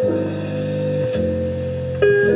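Pre-recorded music played back on a Marantz PMD-221 mono cassette recorder: held chords over a bass line that moves to a new note about a second in.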